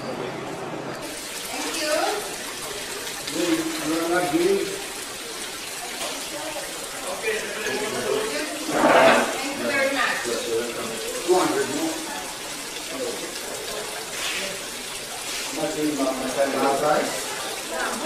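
Steady rush of running water, with people talking at intervals over it.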